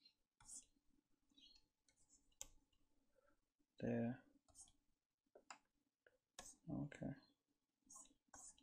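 Faint, scattered clicks and taps of a stylus pen on a drawing tablet as brush strokes are laid down, with a short mumbled "yeah, uh" about four seconds in.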